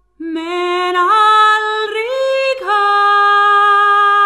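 A woman singing unaccompanied in a Swedish-language folk song, starting just after a brief pause. She holds long notes that step up twice and then drop to one long held note.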